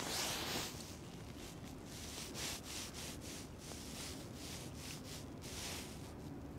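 Faint rustling and scuffing from a person walking with a clip-on microphone, in short irregular strokes a few times a second.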